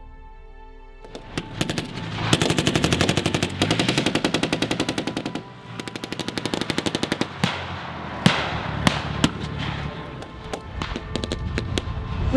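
Background music fades about a second in, giving way to blank-firing small arms: three long automatic bursts of machine-gun fire, then separate loud single shots and scattered firing.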